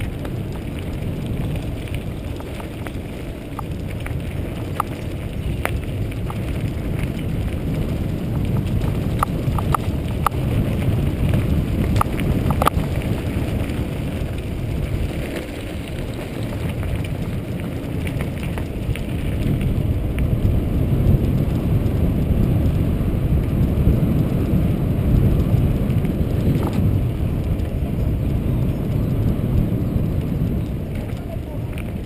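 Riding noise from a mountain bike on a gravel road, picked up by an action camera: a loud, steady rumble of wind on the microphone mixed with tyres rolling over gravel and the bike rattling. A few sharp clicks stand out, the clearest about twelve seconds in.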